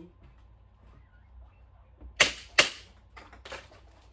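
Gas-blowback airsoft Glock 17 Gen 4 pistol running on green gas, fired twice in quick succession, two sharp pops about half a second apart, followed by a few faint clicks.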